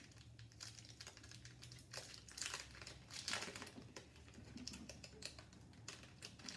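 Faint crinkling of a hockey card pack's foil wrapper being opened and handled, in a run of rustles, the two loudest about two and three seconds in.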